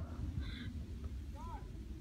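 Low rumble of handling and wind on a phone's microphone, with a couple of faint, brief voice sounds about half a second and a second and a half in.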